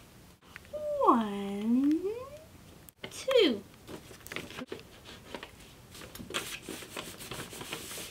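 Sheets of paper rustling and crinkling as they are handled and smoothed flat by hand on a cardboard box. In the first half, two drawn-out voice-like calls stand out above it: one swoops down and back up, and a shorter one falls.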